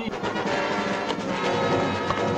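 Film soundtrack music with held, sustained chords.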